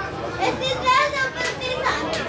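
Several voices shouting and calling out during a football match, loudest in a run of shouts in the middle.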